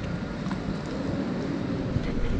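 Steady outdoor background noise with a low rumble and hiss, with no distinct event standing out.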